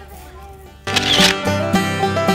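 A camera-shutter click sound effect about a second in, as upbeat banjo music suddenly starts, after faint talking.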